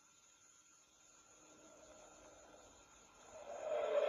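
Car tyre and engine noise that builds from near silence, growing louder near the end as the car is driven hard through a tight slalom.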